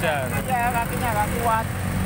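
Speech not caught by the transcript, over a steady low rumble of street traffic.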